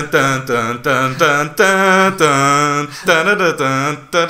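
Men vocalising a TV theme tune from memory without words: short sung notes at about four a second, with one longer held note a little before halfway through.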